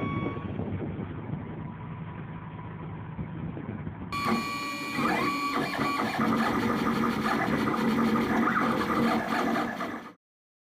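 A truck engine running low and dying down over the first four seconds, then, suddenly louder, a 3D printer's stepper motors whirring in quickly changing tones until the sound cuts off at the end.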